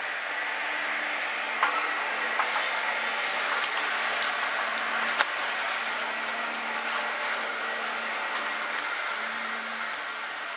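Chairlift top-station machinery giving a steady low hum, with a few sharp clicks and knocks as the chair runs through the station, over a steady rush of wind and skis sliding off the chair onto the snow of the unloading ramp.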